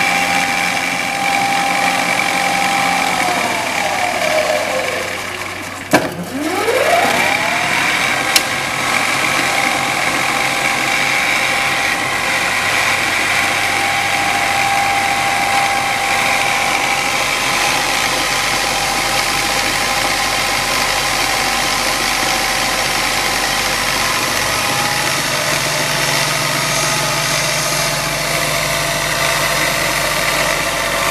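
Beaver variable-speed vertical mill running with a steady whine from its spindle drive. A few seconds in, the pitch falls as the spindle slows. A sharp click comes near six seconds, then the pitch rises again as it spins back up, with another click shortly after, and it then runs steadily.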